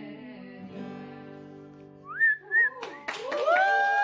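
The last chord of an acoustic guitar song ringing out, then two short, loud whistles just after the middle, followed by hand clapping and a long held whoop of applause as the song ends.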